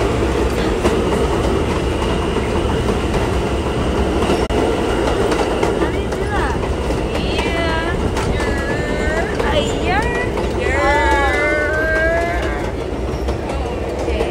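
Train running on the rails, heard from inside the car: a steady rumble and rattle. Voices call out over it from about six seconds in until about twelve seconds.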